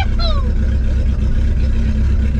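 Turbocharged VW Gol's engine running steadily as the car drives along, heard from inside the cabin as a constant low drone.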